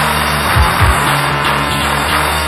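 Instrumental break in a lo-fi rock song recorded on analog four-track tape: sustained distorted guitar and bass, with two low drum thumps just over half a second in.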